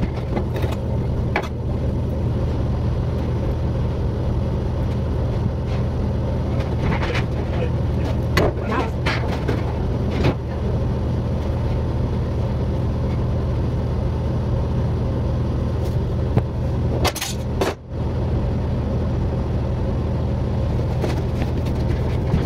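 Steady low mechanical hum, like a kitchen extractor or refrigeration unit running, with a few light clicks and knocks of handling on a plastic cutting board.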